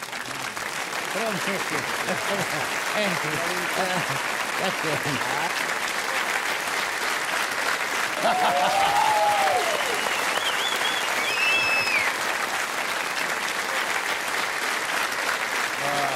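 Studio audience applauding steadily, a long welcome that swells into an ovation, with a few voices calling out over it around the middle.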